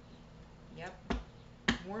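Two sharp clicks, one about a second in and one near the end, between short bits of a woman's voice.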